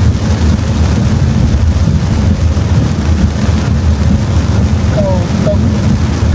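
Heavy rain falling on a car's roof and windscreen, heard from inside the cabin, over a steady low road rumble from the car driving on the wet road.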